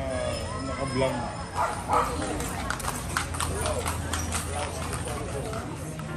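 A horse's hooves clip-clopping on stone paving, a quick run of sharp hoofbeats from about a second and a half in until past four seconds, with people's voices around it.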